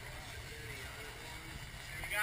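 Steady low rumble of a boat under way, with wind and water noise and a faint voice in the background.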